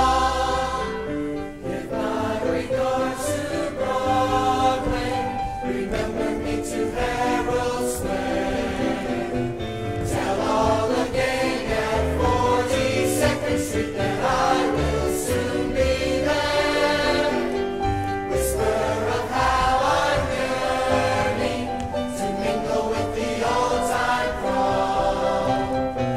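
Live stage recording of a musical revue's cast singing together in chorus, with musical accompaniment.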